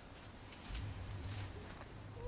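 Faint crunching of a toddler's boots stepping through snow, a few short steps.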